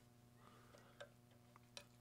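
Near silence: a faint steady electrical hum, with two faint clicks, one about a second in and one near the end.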